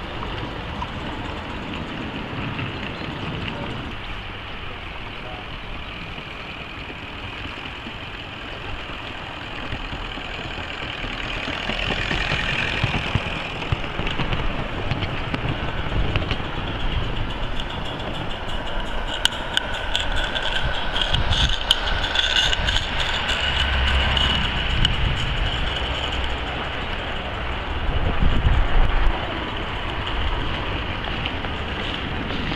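16mm-scale garden railway trains running on the track: the steady sound of small model locos and their wheels, with sharp clicks clustered for several seconds in the second half, and people talking in the background.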